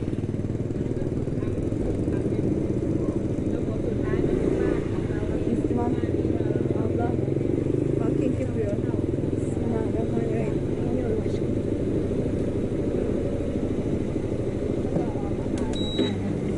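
Small motorcycle engine running at low speed as the bike rolls along and pulls up, with a steady low rumble.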